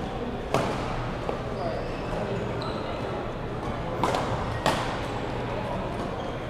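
Badminton rackets striking a shuttlecock: a sharp smack about half a second in, a lighter one soon after, and two more close together around four seconds in. Underneath is a steady hubbub of voices in a large sports hall.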